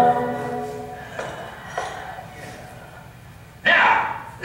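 Soundtrack of a projected film heard over a hall's speakers: a held music chord fades out in the first second, two faint short knocks follow, then near the end a sudden loud burst of sound, voice-like, breaks in.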